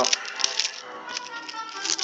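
Plastic film cover of a frozen dinner tray being pierced and scraped with a small knife: a scatter of small clicks and crinkles, over faint background music.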